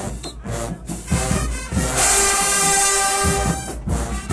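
Marching band brass (sousaphones, mellophones and trumpets) playing. After a quieter, broken first second, the horns swell into a loud, bright held chord about two seconds in, over low bass pulses.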